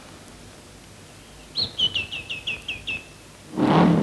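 A small bird singing a quick run of about seven short, high chirps, each dipping in pitch, over quiet film hiss. Near the end a car engine comes in and grows louder.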